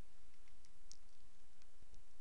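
A few faint clicks from a computer mouse as a web page is scrolled, over a steady low hiss of room noise.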